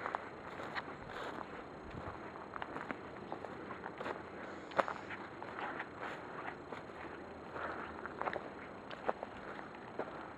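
Footsteps crunching through dry leaf litter, pine needles and twigs on a forest floor, in an uneven stop-start pace with a few sharper cracks.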